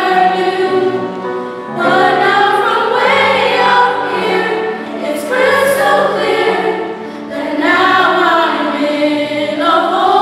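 Large mixed choir of women's and men's voices singing in parts, in sustained phrases that ease off briefly every two to three seconds before swelling again.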